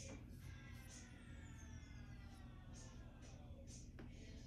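Near silence: soft bristle strokes of a paintbrush spreading egg wash over a gessoed wooden board, with a faint tone slowly falling in pitch in the background.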